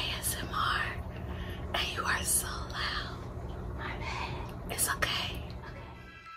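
A woman whispering, with crisp hissing s-sounds, over a steady low hum.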